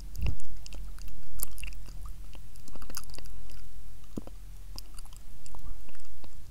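Inaudible ASMR whispering close to the microphone: wet lip and mouth clicks and breathy puffs with no clear words, clicking irregularly throughout.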